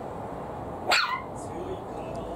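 Maltese puppy giving a single short, high bark about a second in, a wary bark at a plastic bottle it is afraid of.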